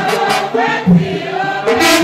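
Mixed church choir singing a Tiv-language worship song together, over sharp percussive strokes that mark the beat.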